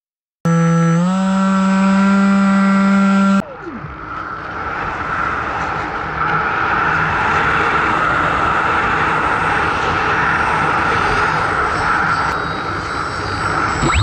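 Onboard sound of a Bixler RC foam plane: its electric motor gives a steady whine that steps up slightly about a second in, then winds down with a falling pitch about three seconds in. A steady rush of air over the airframe and microphone follows as the plane glides, and the motor whine comes back right at the end.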